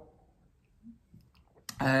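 Drinking from a glass: a few faint clicks and a small swallow in a mostly quiet stretch. Then a woman's voice starts with "uh" near the end.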